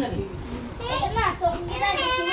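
Voices of children and adults chattering over one another, with no clear words.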